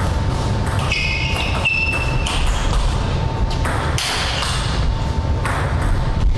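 Table tennis rally: sharp clicks of the celluloid ball against rubber bats and the table, with brief high squeaks of shoes on the court floor about one to two seconds in. A steady low hum runs underneath.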